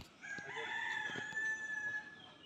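A rooster crowing once: one long drawn-out call held at a steady pitch for most of two seconds.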